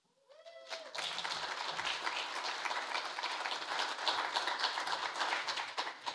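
Audience applauding, starting about a second in and running on for about five seconds. A brief vocal sound comes just before the clapping begins.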